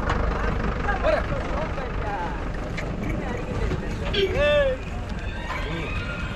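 People's voices in the background over a steady low rumble, with one loud, drawn-out call that rises and falls in pitch about four seconds in.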